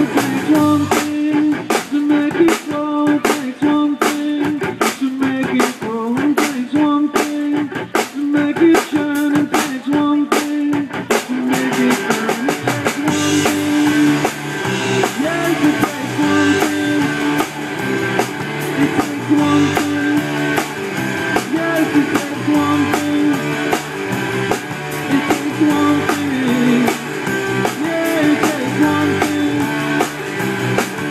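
Live rock and blues band playing an instrumental passage: electric guitars over bass and a drum kit. A repeating guitar riff runs with sharp drum hits, then about eleven seconds in the full band opens up with cymbals ringing.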